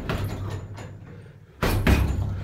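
Punches landing on a hanging heavy bag as dull thuds. A hit at the start dies away into a short lull, then two quick punches land near the end.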